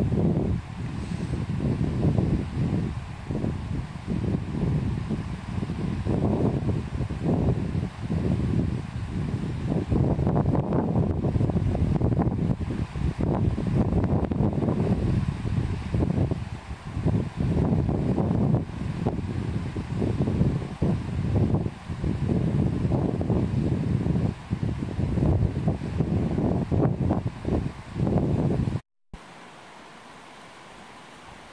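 Wind buffeting the microphone: a loud, gusty low rumble that rises and falls, cutting off abruptly near the end to a much quieter steady hiss.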